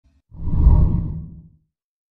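A deep whoosh sound effect, swelling in about a third of a second in and dying away by about a second and a half, with most of its weight in the bass.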